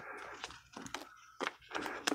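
Baseball cards being handled and slid into the pockets of a clear plastic binder page: soft intermittent rustling of the plastic sheet, with light clicks and scrapes from the card edges.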